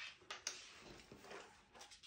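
Faint handling noise: a couple of soft clicks about half a second in, then light rustling, as a small numbered draw disc is set down on a table and a paper list is handled.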